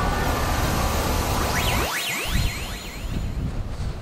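A magic sound effect: a rushing whoosh for about two seconds, then quick whistling sweeps going up and down in pitch that fade out near the end.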